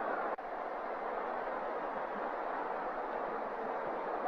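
Steady roar of a large football stadium crowd heard through an old television broadcast, with a brief drop-out about a third of a second in.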